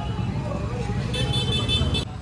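Street noise: a steady low traffic rumble with people talking, and a high, steady tone over the last second.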